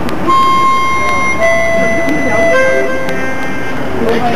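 A few long, steady, high notes from a pitched instrument, each held about a second before moving to a new pitch, over a background murmur of people talking.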